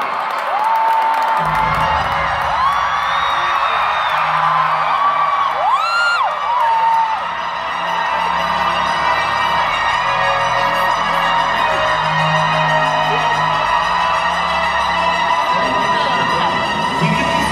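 Arena crowd cheering and screaming, with long high whoops from fans, as a live rock band's music comes in about a second and a half in with low sustained bass notes that carry on under the crowd.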